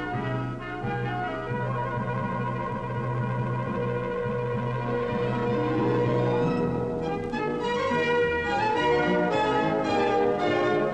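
Orchestral film score: sustained chords over a held low note, turning livelier with short accented notes about seven seconds in.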